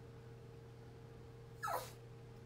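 A faint steady hum, then near the end one brief squeal that falls sharply in pitch.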